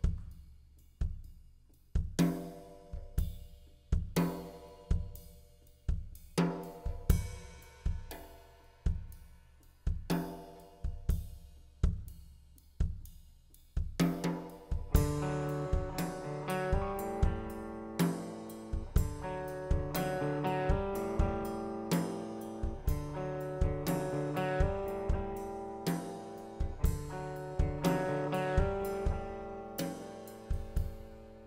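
Live rock band playing an instrumental song intro: a slow, steady drum-kit beat of about one hit a second with bass notes and chords. About fourteen seconds in, sustained instrument lines join and fill out the sound.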